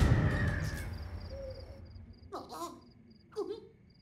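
A cartoon Rabbid's voice: two short moaning whimpers, one about two and a half seconds in and a shorter one near the end, after a loud sound fades away at the start. Faint high electronic beeps repeat in the background.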